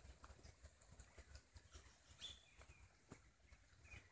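Faint footsteps on dry leaf litter, heard as scattered soft crunches and clicks, with a short high bird call about two seconds in.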